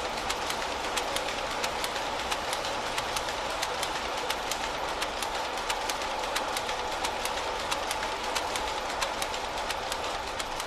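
Two power looms weaving in a steam-driven mill, giving a steady loud clatter of rapid, regular sharp clacks, over the running of the line shafting, bevel gears and drive belts.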